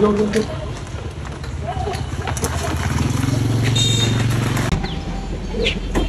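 A small underbone motorbike's engine running, its hum growing louder over a couple of seconds and then cutting off abruptly a little before five seconds in.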